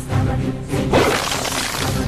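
Background music with a sudden crash of shattering glass about a second in, used as a comedy sound effect.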